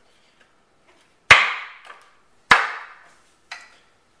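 Hand blows knocking the wooden seat front of a rocking chair into its mortise-and-tenon joints: two sharp knocks about a second apart, then a lighter one near the end.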